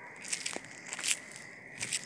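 Faint crackling and rubbing handling noise from a hand-held phone microphone during a walk, with a few soft clicks.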